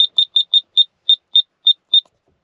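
Short, high electronic beeps from a 4WD EVO digital tyre-inflation controller as its buttons are pressed to set the target pressure, about nine beeps in quick succession, spacing out slightly toward the end.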